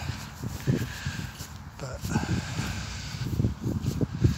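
Uneven low rumbling on a handheld phone's microphone during a slow barefoot walk on grass, with a faint, steady drone from a distant grass-cutting mower.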